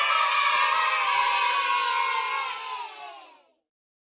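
A crowd cheering and shouting, sliding slightly down in pitch and fading out over about three and a half seconds, then silence.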